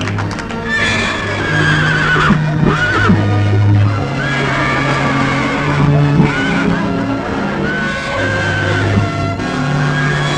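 A horse whinnying several times in long, quavering calls over orchestral music with held notes.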